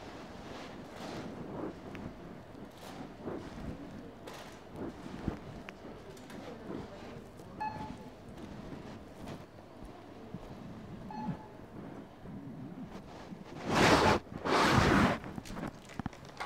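Hand-held camera carried through a supermarket, its microphone picking up handling knocks and rustles over the shop's background noise. Two short electronic beeps come a few seconds apart, and near the end a loud burst of rustling hits the microphone.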